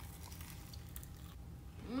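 Faint biting and chewing on fried chicken drumsticks: a few soft, short crunches over a low steady hum.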